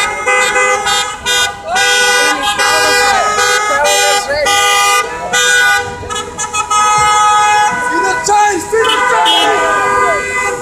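Several car horns honking together in a street convoy: short toots in the first second or so, then long held blasts that overlap, with people shouting over them.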